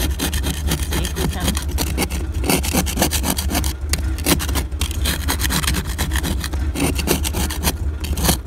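Small plastic ice scraper scraping solid ice off a car windshield in quick, repeated strokes over a steady low hum.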